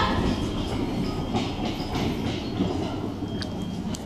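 Steady background noise of a railway station's open walkway, with a couple of light clicks near the end.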